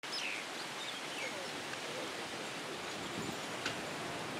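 Outdoor ambience by a lily pond: a steady hiss of background noise with a few faint bird chirps, one of them a quick falling chirp right at the start.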